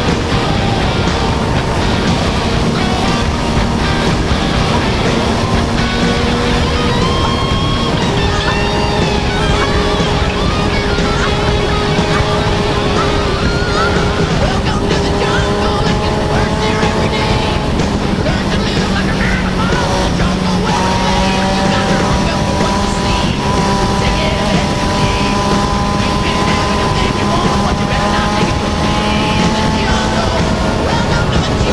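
Sportbike engine running at speed with heavy wind rush, its steady pitch stepping to a new level a couple of times. Music with singing plays over it.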